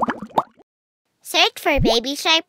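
A short, bubbly cartoon sound effect of quick pops with little upward sweeps. A second later a high-pitched cartoon voice starts speaking.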